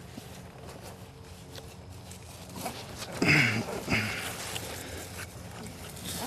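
A long-handled steel hosta trowel digging into soil and cutting through old hosta roots: faint scraping and crunching with scattered clicks. About three seconds in comes a louder stretch with a short grunt of effort.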